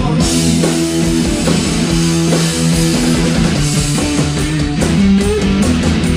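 Live garage rock band playing an instrumental stretch: a loud electric guitar riff of held low notes over a drum kit, with no singing.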